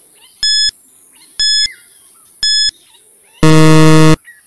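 Quiz countdown-timer sound effect: three short, high beeps about a second apart, then a longer, louder, lower buzzer near the end that marks time running out.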